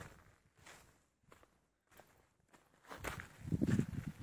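Footsteps on loose volcanic sand and stones: a few faint steps at first, then louder, rougher steps from about three seconds in.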